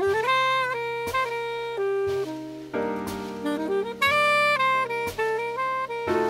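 Saxophone playing a slow jazz ballad melody in long, held notes, scooping up into the first one. Beneath it, a backing of sustained chords and bass with a soft drum stroke on each beat, about one a second.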